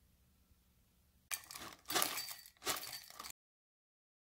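A spoon scraping and clinking in a glass cup, three noisy strokes over about two seconds, then the sound cuts off abruptly.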